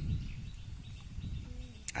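Quiet outdoor background noise: a low rumble with a few faint, soft ticks.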